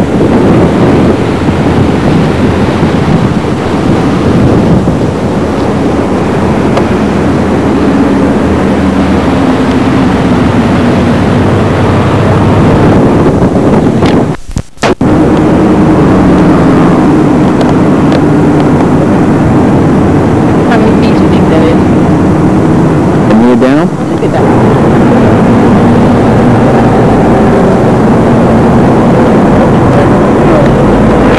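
Loud, steady rumbling outdoor noise on a camcorder's microphone, with faint voices under it. The sound drops out briefly about fourteen seconds in, where the tape recording is cut.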